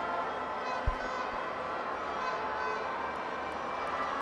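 Steady stadium crowd hubbub, with a brief low thump about a second in.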